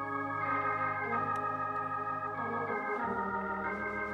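Organ holding sustained chords, with the bass moving down to a lower note about three seconds in.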